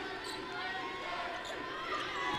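A basketball being dribbled on a hardwood court, with arena crowd voices underneath.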